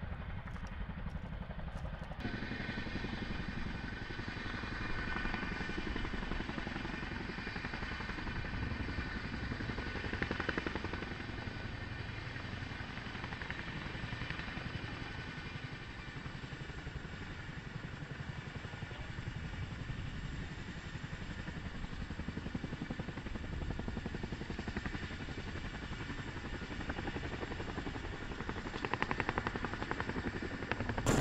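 CH-47 Chinook tandem-rotor helicopter hovering low, its rotors and turbine engines making a steady drone with a high whine over it.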